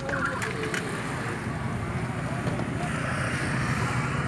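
Steady rumble of motor vehicle noise, with faint voices in the background.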